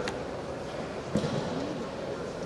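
Quiet sports-hall ambience with a single sharp knock a little past a second in.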